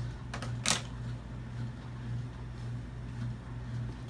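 A few sharp clicks and taps of makeup items being handled and set down on a vanity top in the first second, then a steady low hum.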